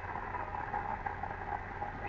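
Indistinct murmur of a crowd in a large hall, with a steady low hum underneath.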